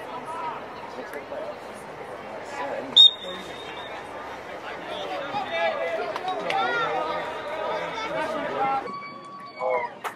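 Scattered voices of lacrosse players and spectators calling out, with one short, sharp referee's whistle blast about three seconds in, the signal that starts the faceoff.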